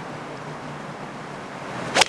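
A golf club striking the ball with a single sharp crack on a long fairway second shot, heard near the end after a brief swing swish, over a steady outdoor background hiss.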